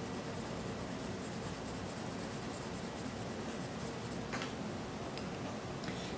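Staedtler Ergosoft colored pencil shading lightly on cardstock: a soft, steady scratching of the pencil lead against the paper, with a small click about four seconds in.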